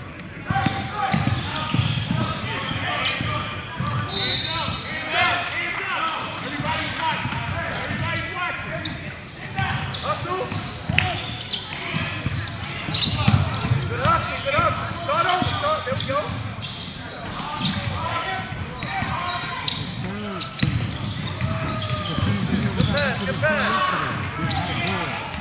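Basketball bouncing on a hardwood gym floor amid continual overlapping shouts and chatter from players and spectators, echoing in a large hall.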